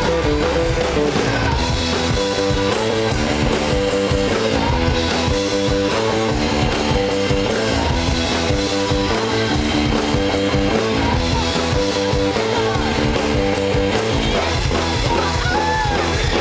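Live rock band playing loud through a stage PA: electric guitars over a drum kit, with a guitar riff repeating about every two seconds.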